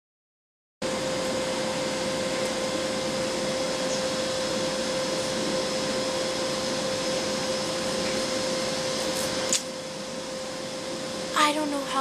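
A steady whirring noise with a constant hum in it starts about a second in and runs until a sharp click about nine and a half seconds in, after which it drops away; a girl's voice begins near the end.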